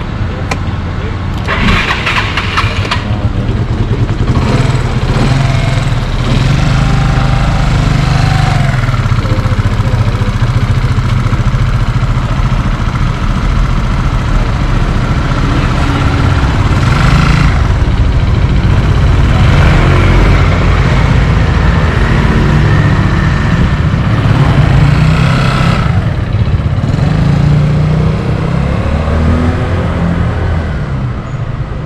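Small motor scooter engine running close by, its pitch rising and falling as it is revved and eased off. A brief rattle of clicks about two seconds in.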